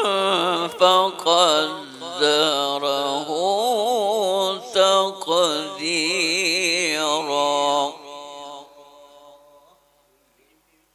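A man chanting Arabic in the melodic Quranic recitation style, his voice wavering through long ornamented phrases, then trailing off about eight seconds in.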